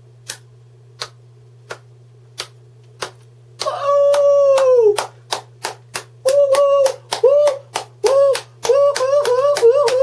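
Hand claps keep an even beat, a little under one and a half a second, and quicken later. About three and a half seconds in, a man's voice joins them with a long held tone and then repeated short swooping tones that rise and fall, a mouth-made techno-style beat.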